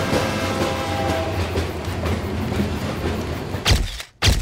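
Train passing: a loud, steady rumble and rattle of rail cars with a held tone in the first second or so, ending in a heavy thump near the end.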